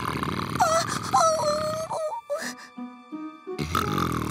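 Wordless whimpering of a cartoon character, a wavering whine that slides up and down, over a low grumbling rumble and background music. The rumble breaks off about two seconds in and returns near the end.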